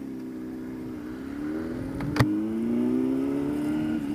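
Kawasaki ZX-10R's inline-four engine accelerating, its pitch rising steadily, with a single sharp click about two seconds in.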